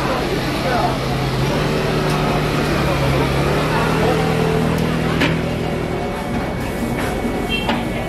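Busy noodle-shop kitchen ambience: indistinct voices over a steady low hum, with a sharp clink about five seconds in and a few more near the end.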